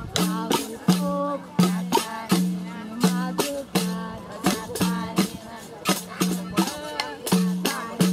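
Several pandeiros played together in a steady capoeira rhythm: a low drum-head tone about every three-quarters of a second, with sharp jingle strikes between, and voices over the beat.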